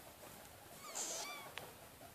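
Guinea pig squeaking: a few short, high squeaks about a second in, followed by a faint click.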